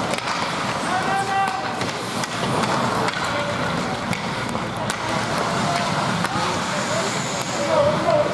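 Ice hockey rink during play: skate blades scraping on the ice and scattered sharp clacks of sticks and puck, under indistinct shouting from players and spectators.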